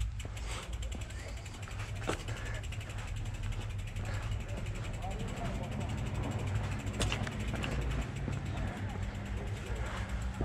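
Mountain bike freewheel hub ticking rapidly while the bike coasts, over a low rumble of tyres rolling on paving and gravel.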